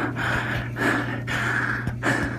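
A person breathing heavily and noisily close to the microphone, a few breaths in quick succession.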